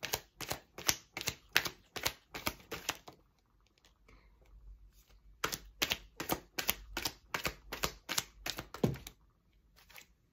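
A tarot card deck shuffled by hand: a run of quick card slaps, about three a second, that eases off about three seconds in and then picks up again. It ends with a heavier thump near the end as cards drop onto the cloth-covered table.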